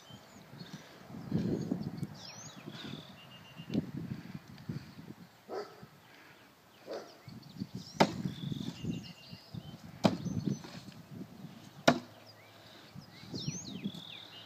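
Three throwing knives, thrown with one spin each, strike wooden targets one after another with sharp knocks about two seconds apart in the second half. Low rustling comes before the throws.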